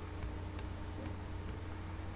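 A few faint, sharp computer-mouse clicks, about four, irregularly spaced, heard over a steady low electrical hum.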